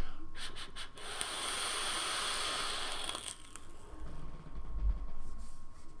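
A long draw on a dual-coil rebuildable dripping tank atomizer, fired at about 100 watts: a few soft clicks, then air hissing through the airflow for about two seconds. After a short pause comes a slow, breathy exhale of vapour.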